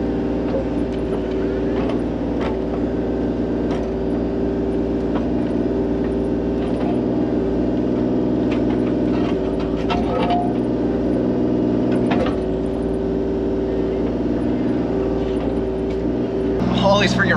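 Mini excavator's diesel engine running steadily under the operator's seat while the hydraulics work the boom, heard from inside the cab, with a few sharp knocks scattered through.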